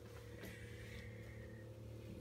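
Faint steady hum in a quiet room, with a soft click about half a second in.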